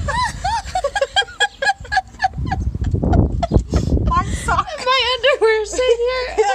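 A woman laughing helplessly in quick, high repeated bursts, turning near the end into a high, wavering laugh that sounds close to crying. A low rumble on the microphone comes about halfway through.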